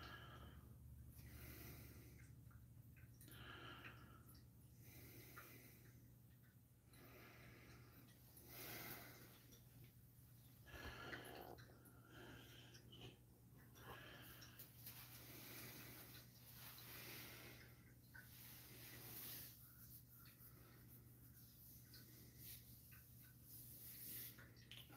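Near silence: a faint steady low hum with soft rushes of noise coming every second or two.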